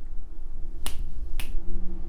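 Two crisp finger snaps about half a second apart, a little under a second in, over a steady low rumble.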